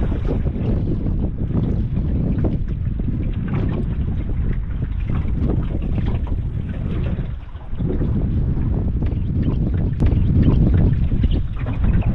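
Wind buffeting the microphone on an open boat: a loud, rough low rumble that dips briefly about two-thirds of the way through. One sharp click near the end.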